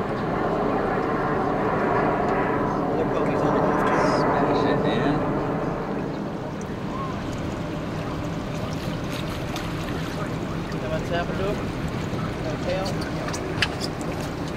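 A boat's motor runs steadily at slow-trolling speed with a low hum. From about nine seconds in, short zit-zit clicks come from the spinning reel as line is pulled off, the sign of a bluefish hitting the live pogy bait.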